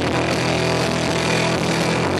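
Live rock band playing loudly, with electric guitars and bass holding a sustained, droning chord.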